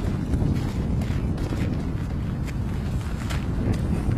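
Two-stroke gasoline engine of a large radio-control model airplane running on the ground with its propeller spinning, buried under heavy wind noise on the microphone.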